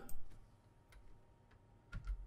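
A few faint, separate clicks of computer keys, spread about a second apart, during code editing.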